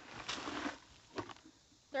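Loose dirt poured out of a plastic bucket onto a dirt pile: a rushing pour lasting under a second, followed a little later by two short knocks.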